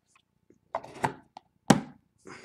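A few short knocks and taps, the loudest a sharp knock near the end, from trading-card packaging being handled on a tabletop.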